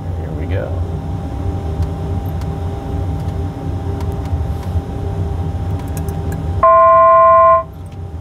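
Steady low rumble of the PC-12 NG simulator's engine and airflow sound. Near the end, a loud steady electronic tone sounds for about a second and cuts off.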